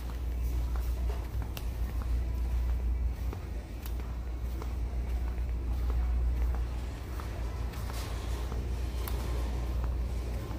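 Retail store interior ambience heard while walking the aisles: a steady low rumble under faint background music and footsteps.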